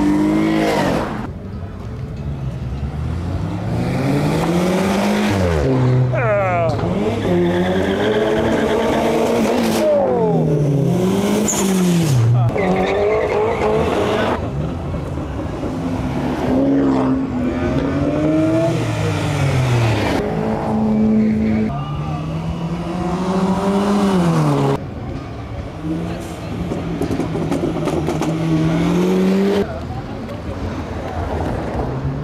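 Car engines revving over and over as cars drive slowly past, the pitch climbing and dropping every second or two.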